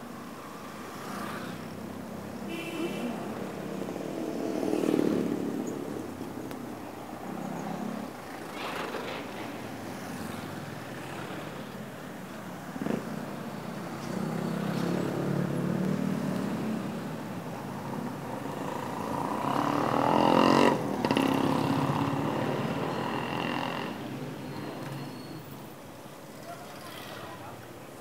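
Street traffic: small motorcycle-type engines and cars passing, their running sound rising and fading in swells. The loudest pass is about twenty seconds in.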